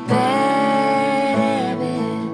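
Female voice singing a long held note over strummed acoustic guitar, the note and a strum starting together just after the opening, the pitch moving about halfway through.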